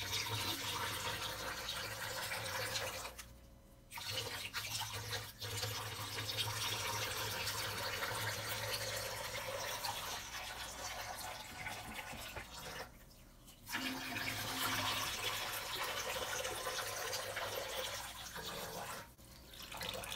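Thin streams of water draining out of holes in the bottom of glass orchid pots and splashing into a stainless steel sink, as the tape over each drain hole is peeled off. The splashing starts suddenly and breaks off briefly three times as one pot after another is opened.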